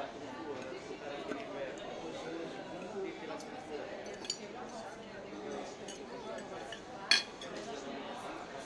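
Metal forks clinking and scraping against ceramic plates, a few scattered clinks with one louder, sharper one about seven seconds in, over background chatter.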